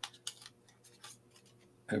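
Faint clicks and crinkles of a double-edged razor blade being taken out of its clear plastic pack and paper wrapper. They cluster in the first half second, with a few scattered ticks after.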